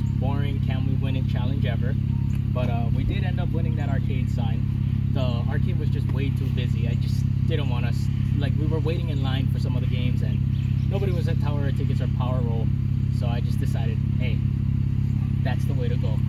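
A man talking over a steady low hum from an idling car engine.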